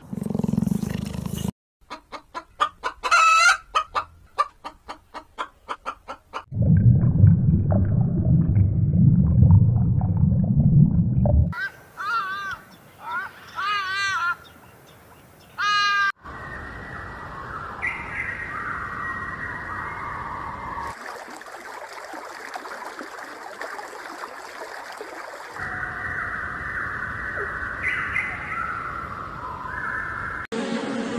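A series of different animal sounds cut one after another: a quick run of sharp calls, a loud low-pitched stretch, a few bird calls that waver in pitch, then a steady noisy stretch for the last half.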